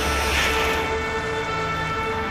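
A whale's blow: one short rushing exhalation in the first second, over background music with sustained chords.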